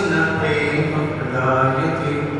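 Devotional mantra chanting by voice, in long held notes that step from pitch to pitch.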